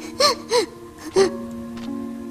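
Three short gasping whimpers from a cartoon duckling's voice, each bending up then down in pitch, over held chords of background music.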